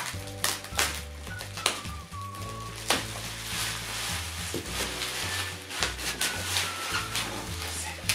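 Bubble wrap crinkling and crackling in irregular bursts as it is pulled open by hand, over background music with a steady bass line.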